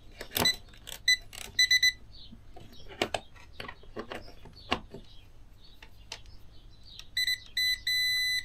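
Digital clamp meter beeping: a short high beep about a second in with a quick run of three just after, then more short beeps near the end finishing in a longer held beep. Sharp clicks and knocks from handling the meter and test probes fall between the beeps.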